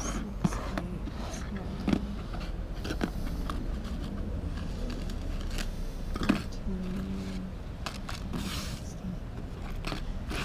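Wind rumbling on the microphone, with scattered sharp clicks and rustles of things being handled and a faint voice in the background.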